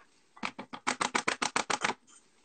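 A coffee bag being tapped or shaken to empty the last ground coffee into a paper pour-over filter: a quick run of about a dozen sharp taps, about eight a second, lasting well over a second.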